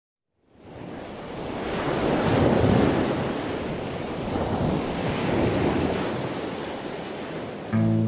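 Ocean surf: waves wash in and recede, swelling twice and then fading. An acoustic guitar comes in right at the end.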